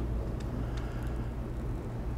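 Steady low hum with a faint hiss over it: room tone.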